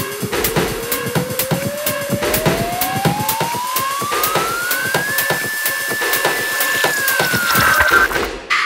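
Dark techno track in a DJ mix: a single synth tone rises steadily in pitch for about five seconds, holds, then dips near the end, like a siren build-up, over a steady electronic beat.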